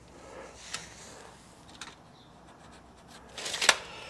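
A steel tape measure's blade retracting into its case with a brief rattling whir that ends in a sharp snap near the end, after a few faint clicks of handling.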